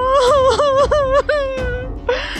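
A woman wailing: a high cry that breaks into several wavering sobs, then is held and trails off near the end.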